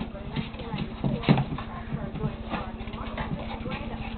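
Two pit bulls, a young puppy and a yearling, play-fighting on the floor: paws and claws scrabbling, with irregular quick knocks and bumps, the loudest about a second and a quarter in, and brief vocal noises from the dogs.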